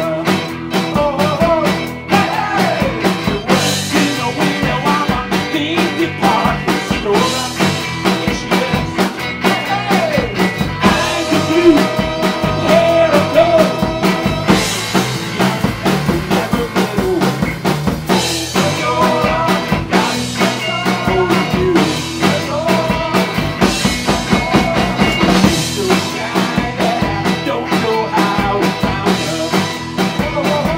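A rock band playing live: electric guitars and a drum kit with a steady beat, and a singer.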